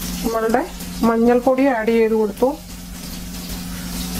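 Tomato and spice mixture sizzling faintly in oil in a kadai on a gas stove, under a steady low hum. A voice speaks through the first half or so.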